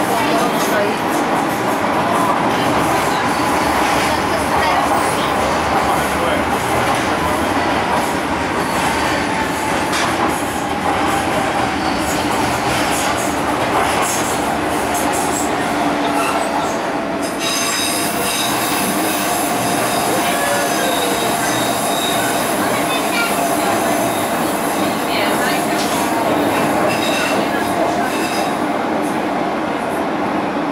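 Docklands Light Railway B2007 Stock train running, heard from inside the car, with a steady rumble of wheels on rail and a whine that slowly falls in pitch. About halfway through, a high-pitched wheel squeal sets in as the train takes a curve, fading near the end.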